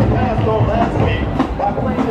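Jackson State University marching band playing loud on the field: massed brass over the drumline, with sharp drum hits.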